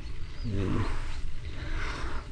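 A man's voice making one short drawn-out hesitation sound, sliding down in pitch, in a pause mid-sentence, followed by faint background hiss.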